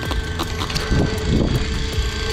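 A boat's motor running with a steady hum under a fluctuating low rumble of wind on the microphone, and a few sharp knocks in the first second as the line and fish are hauled up over the boat's side.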